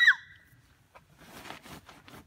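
A short, high, thin vocal squeal trails off right at the start. After it comes faint rustling and scuffing.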